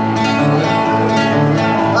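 Acoustic guitar strummed in a steady rhythm, playing the accompaniment between sung lines of a live folk song.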